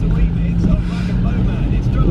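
Moving car heard from inside the cabin on a wet road: a steady low engine and road rumble with tyre hiss.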